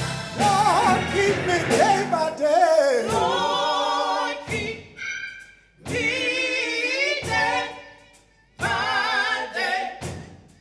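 Gospel singing: a voice with vibrato sung into a microphone, in long held phrases broken by short pauses.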